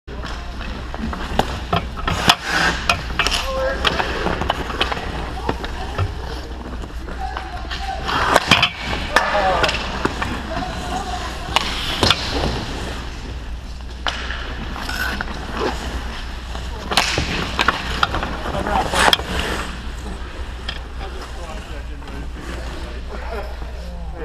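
Ice hockey play heard close to the goal: skate blades scraping and carving on the ice, with repeated sharp knocks of sticks, puck and pads. A steady low hum runs underneath, and players' voices come in faintly.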